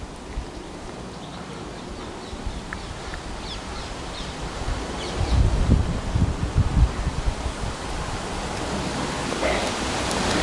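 Outdoor wind noise, a rushing hiss that slowly grows louder, with low buffeting on the microphone about halfway through and a few faint bird chirps.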